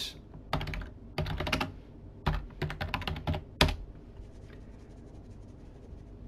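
Typing a command on a computer keyboard: a run of quick keystroke clicks in small bursts over about three seconds, ending with one sharper stroke, then faint clicking.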